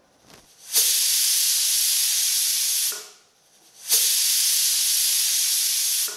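Stainless steel pressure cooker whistling: the weight on the vent lifts and steam escapes in two loud hissing blasts of about two seconds each, about a second apart, a sign that the cooker is up to pressure.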